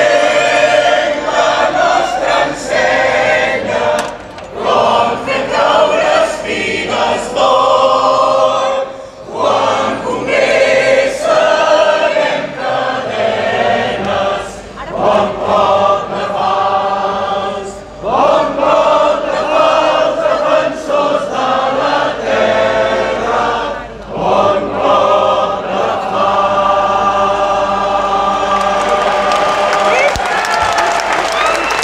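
A mixed choir singing through microphones in phrases broken by short pauses, with a large crowd singing along, ending on a long held note.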